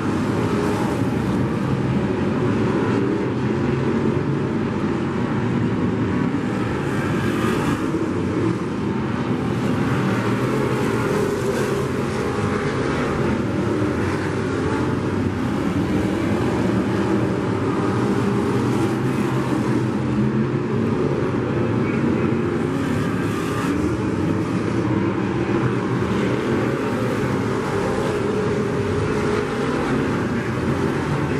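A pack of dirt-track sport modified race cars with their engines running hard at racing speed. It is a steady, dense engine noise that swells and eases as the cars pass.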